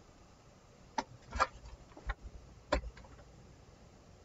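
A few light knocks and taps as a steam iron is picked up and set down on a wool pressing mat, two of them with a dull thud.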